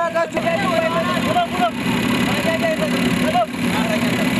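Motorcycle and vehicle engines running steadily at low speed in a convoy, with people's voices calling out over them.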